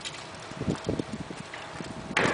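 A quick run of several dull, low knocks, from about half a second to a second and a half in.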